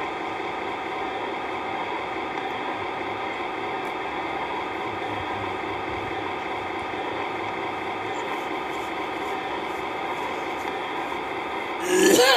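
Steady, even machine hum with a faint hiss, unchanging throughout; the man's voice comes back in right at the end.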